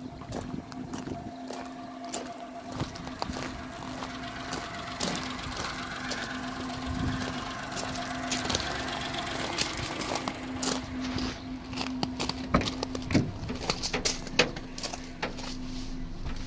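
Daewoo Matiz's small petrol engine idling with a steady drone and an even hum. From about ten seconds in, several sharp clicks and knocks stand out over it.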